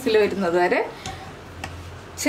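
A woman speaking for under a second, then a quieter stretch with two faint clicks.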